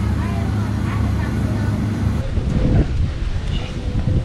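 Steady low drone of a sailboat's motor, heard inside the cabin. About two seconds in, it cuts to wind buffeting the microphone outdoors.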